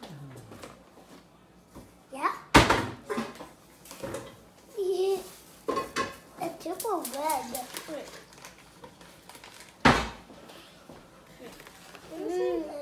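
A paper packet of Jell-O powder rustling and a plastic mixing bowl being handled on a tile counter, with two sharp knocks, one about two and a half seconds in and one near the end. A child vocalizes briefly in the middle.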